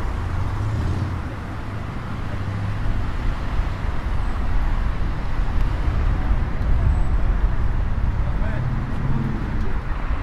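City street traffic noise, a steady rumble of passing cars, with people talking nearby, their voices clearest near the end.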